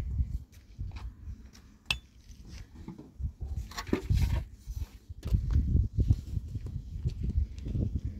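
A tool scraping and knocking in a metal basin of wet mortar, with scattered clinks and knocks, over an uneven low rumbling.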